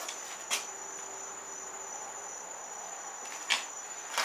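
A steady, thin high-pitched whine over quiet room noise, with two brief taps, one about half a second in and one near the end.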